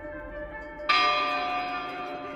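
Music soundtrack: soft sustained tones, then a bell struck once about a second in, its bright overtones ringing on and slowly fading.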